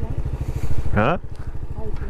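Honda Pop 110i's small single-cylinder four-stroke engine running steadily at low revs, heard from the rider's seat as an even, rapid low pulse while the motorcycle rolls slowly through a turn.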